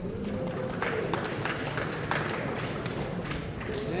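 A small seated audience applauding: scattered, irregular hand claps with faint voices beneath.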